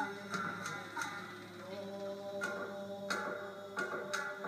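Shamisen of a kabuki nagauta ensemble, played back through a television: a few sharp plucked notes that ring on in held tones.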